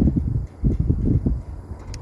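Wind buffeting a phone microphone in irregular low gusts.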